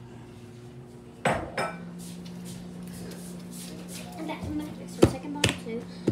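Kitchenware being handled on a counter: a few sharp knocks and clinks, two just over a second in and two more near the end. A steady low hum sets in just after the first knocks.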